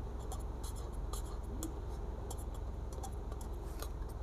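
Pen writing on paper: a quick, irregular series of short scratching strokes as a word is written out by hand, over a low steady hum.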